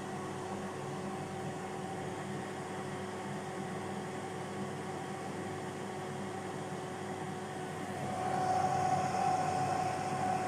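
Tefal Easy Fry & Grill air fryer running: a steady whir with a hum, rising a little about eight seconds in.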